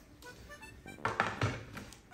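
Quiet background music, with a light tap of a plate being set down on a table about a second in.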